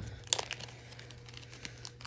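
Faint crinkling and a few short, sharp clicks as fly-tying materials are handled, over a steady low hum.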